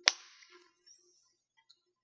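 A single sharp snap as the flip-top cap of a small plastic bottle of acrylic paint is opened.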